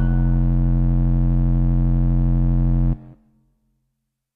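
Final held chord of a J-pop song: a steady, low, many-toned drone that cuts off suddenly about three seconds in.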